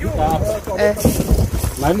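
People talking, with wind buffeting the microphone about a second in.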